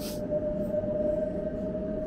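City tram rolling past close by on its rails: a steady single-pitched whine over a low rumble. A brief hiss comes right at the start.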